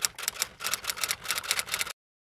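Typewriter key-click sound effect: a quick, uneven run of about eight to ten clicks a second, laid over text typed onto the screen. It cuts off suddenly just before the end.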